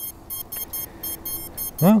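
Beeper of an HGLRC Petrel 65 brushless tiny whoop drone, switched on from the radio: a rapid run of faint, high-pitched beeps, about five a second. This is the drone's locator beeper, and this is about as loud as it gets.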